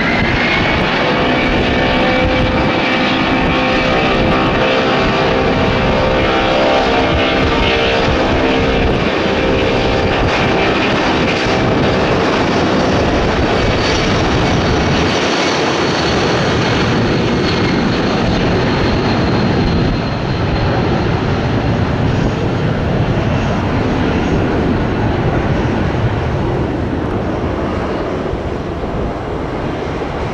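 Boeing 757 twin turbofan engines spooling up to takeoff thrust. At first a rising whine sits over a steady hum, then a steady rushing jet noise takes over as the jet rolls down the runway.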